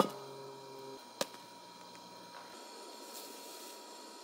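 A metal camping mug clinks sharply as it is set down, with a second, softer clink about a second later. Near the end there is a faint brief scrape of a spoon stirring in the mug, over a faint steady hum.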